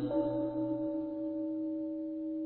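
A struck Buddhist bowl bell ringing on, one steady tone with overtones that slowly fades, as the chanting voices die away in the first moments.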